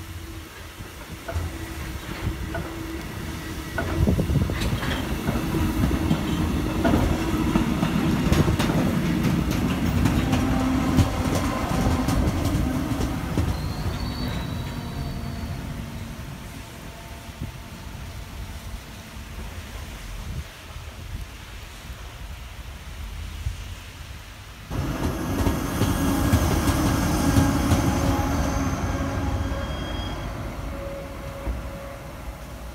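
MaK G 1206 diesel-hydraulic shunting locomotive moving a train of tank wagons: the wagons roll past with a rumble and quick wheel clicks over the rail joints, and a brief high wheel squeal comes midway. About 25 seconds in, the locomotive's diesel engine comes in suddenly loud and close.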